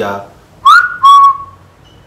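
Loud whistling: two short notes, the first sliding up and held briefly, the second steady and slightly lower.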